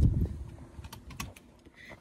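A low rumble of handling noise at the start, then a few light, scattered clicks that fade to quiet.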